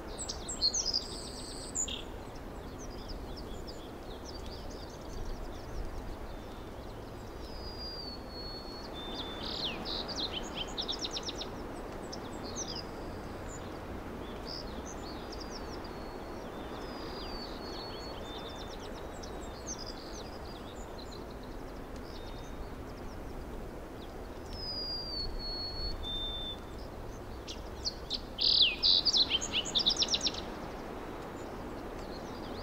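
Birds chirping and singing, short calls and whistles scattered over a steady background hiss, with a louder flurry of chirps near the end.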